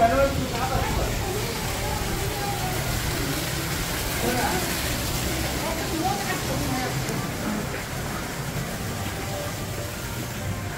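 Indistinct voices of people talking, strongest right at the start and again in the middle, over a steady low background rumble.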